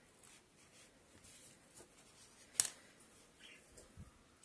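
Faint rustling of yarn being drawn through crocheted fabric with a plastic yarn needle while a crocheted piece is stitched on by hand, with one sharp click a little past halfway.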